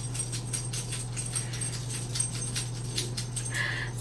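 A pet dog moving about: a quick, irregular run of light clicks over a steady low hum, with a brief higher-pitched sound near the end.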